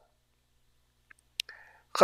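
A quiet pause in a man's narration, then near the end a sharp mouth click and a short breath as he gets ready to speak again, with the start of his next word at the very end.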